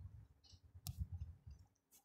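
Near-silent room tone with one sharp click a little under a second in, and a few faint low knocks.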